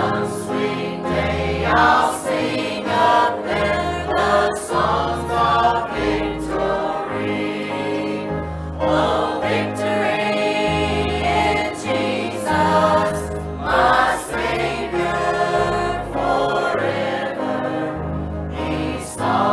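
Church choir singing a hymn together over instrumental accompaniment, with a steady low bass line changing note about once a second beneath the voices.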